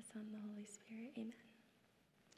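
Faint speech only: a woman's voice, off the microphone, repeating the words of the blessing, in short phrases during the first second or so.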